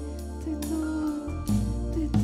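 Live worship band playing without vocals: held keyboard chords over a deep sustained bass, with two sharp percussion hits. The bass moves to a new note a little past halfway.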